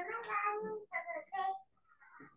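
A person's voice in short pitched stretches, with no clear words, heard over a video call.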